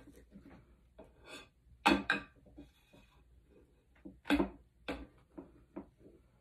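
A few sharp knocks and clatters as an epoxy-coated tumbler is handled on the arm of a cup-turning rotator, with faint rustling between them. The loudest knocks come about two, four and five seconds in.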